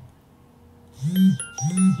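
A short chiming jingle about a second in: a scatter of brief, bright bell-like notes over two low tones that each rise and fall in pitch.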